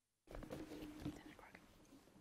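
Dead silence for a moment, then faint low voices murmuring.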